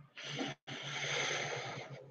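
Two rushes of hissing noise over a faint low hum, a short one and then, after a brief break, a longer one of just over a second, the kind a breath or puff of air into a microphone makes.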